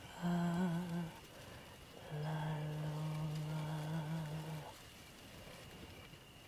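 A low voice humming: a short, slightly wavering note, then one long steady note held for about two and a half seconds.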